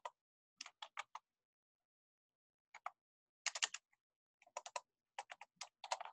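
Computer keyboard typing: several short bursts of rapid keystrokes with brief pauses between them.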